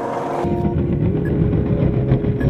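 Skateboard wheels rolling over paving tiles, a steady rough low rumble that starts suddenly about half a second in.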